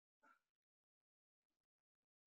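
Near silence: the call's audio is all but muted between the coach's instructions.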